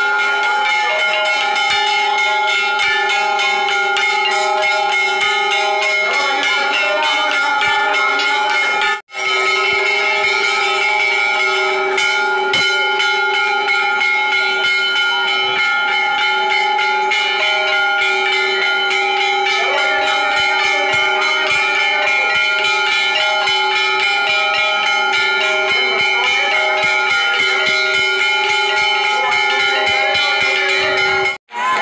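Temple bells ringing continuously, their strikes running together into a loud, steady ring of several pitches, with a brief break about nine seconds in.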